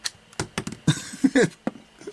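Small plastic spring-loaded ball launcher clicking as its button is pressed and the ball pops out of the cup, followed by a few light plastic clicks and knocks. A short burst of voice comes about a second in.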